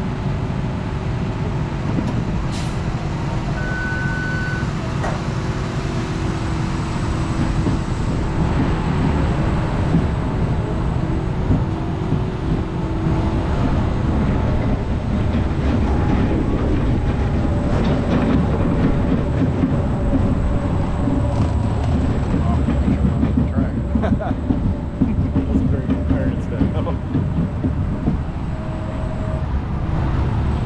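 SBF VISA spinning coaster car rolling out of the station and climbing toward its drop: a steady low rumble of the wheels on the steel track, with scattered clicks and rattles.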